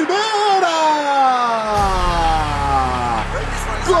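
Football TV commentator's long drawn-out shout on a goal, one held note falling steadily in pitch for about three seconds. Bass-house backing music with a deep bass comes in about halfway through.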